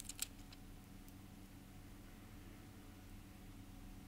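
Near silence: a faint steady hum of room tone, with a few faint clicks in the first half second.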